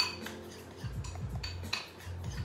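A spoon stirring soft ricotta filling in a small ceramic bowl, scraping and clinking against the bowl, with a sharp clink at the start and another near the end.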